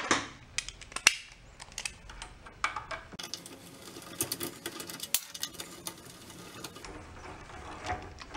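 Small metal hand tools clinking and clicking: hex keys being picked out and handled over a steel workbench, then a driver worked against the bolts of a pressure washer pump, with sharp clinks in the first few seconds and quieter scrapes after.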